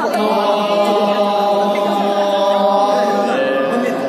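Several choir members singing together, holding a chord on long sustained notes for about three seconds, then moving to a new chord near the end.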